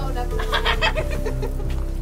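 A chicken clucking in a quick run of short calls about half a second to a second in, over steady background music.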